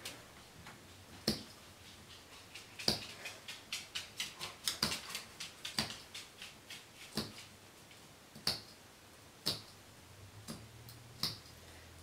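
Small sewing snips clipping into the curved seam allowance of a sewn fabric piece: a series of short, sharp snips, coming in quick runs through the middle and more sparsely near the start and end.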